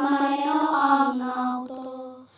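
A solo voice singing a slow phrase of long held notes, as a chant-like soundtrack song. The phrase fades away near the end.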